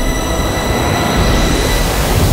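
Dramatic soundtrack effect: a loud rushing noise over a deep rumble, with a whoosh that rises in pitch near the end, as sustained music tones fade beneath it.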